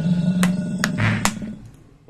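A short sound-effect stinger: a loud, low, steady drone with three sharp clicks about 0.4 s apart, fading out near the end.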